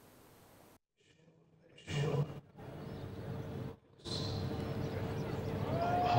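Faint ground ambience from a televised cricket match, coming in after a second of dead silence, with a brief louder sound about two seconds in.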